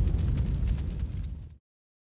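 Deep rumbling tail of a cinematic boom sound effect in a logo sting, fading steadily and cutting off abruptly about one and a half seconds in.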